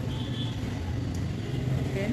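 Steady low background rumble, with a single faint click a little over a second in.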